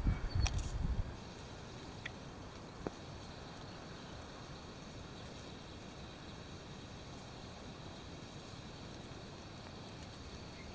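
Quiet outdoor background: an even, faint hiss with two small clicks, after a low rumble on the microphone that stops suddenly about a second in.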